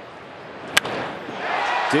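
A wooden baseball bat cracks once, sharp and loud, against a pitched ball about three quarters of a second in: the swing that sends a home run to left field. The ballpark crowd's cheering swells right after.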